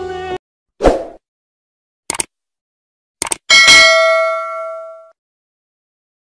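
Background music cuts off, then a short thump, two quick double clicks and a bright bell ding that rings on for about a second and a half: the sound effects of a subscribe-button and notification-bell animation.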